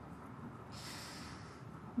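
A person drawing a breath, about a second long, over a faint steady background hiss.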